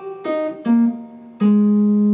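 Guitar playing single down-picked notes to finish a jazzy lick: two short notes, then a lower note struck about one and a half seconds in and left to ring.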